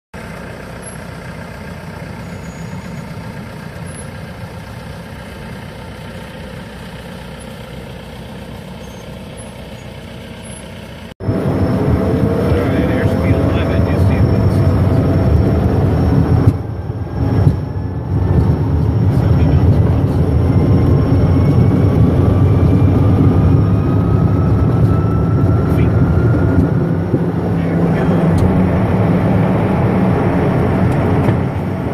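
For about the first eleven seconds, a quieter steady engine noise as an aircraft tug tows the business jet. Then a sudden change to loud, steady cabin noise from the Cessna CJ's twin turbofan engines on a night takeoff roll, with a whine that slowly rises in pitch.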